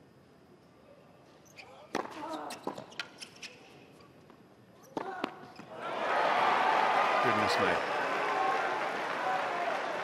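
A tennis ball bounced several times on the hard court before a serve, then two sharp racket strikes about five seconds in. From about six seconds a loud, steady crowd reaction of voices and clapping rises and holds.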